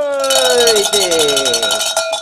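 Handheld brass cowbell shaken rapidly overhead. Its clapper strikes in quick, even strokes over a steady ring that builds from about half a second in.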